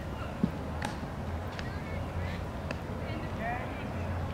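Quiet outdoor ballfield ambience: faint distant voices of players and spectators over a low steady hum, with a few light clicks, the sharpest about half a second in.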